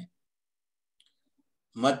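A man speaking in Kannada, with a pause of about a second and a half of dead silence between words. A faint click falls in the pause, and then his voice resumes near the end.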